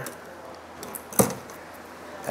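A single sharp metallic click about a second in, with a few faint ticks just before it: pliers handling bare copper ground wires in an electrical switch box.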